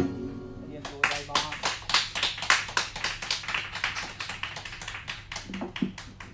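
Small audience applauding, starting about a second in, as the last chord of the acoustic guitar dies away. A voice is heard briefly near the end.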